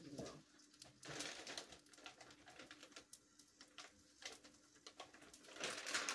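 Faint clicks and rustles of things being handled in a kitchen, over a faint steady hum. Near the end comes a louder crinkling rustle of a plastic food bag being handled.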